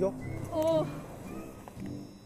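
Background music with a brief voice sound about half a second in.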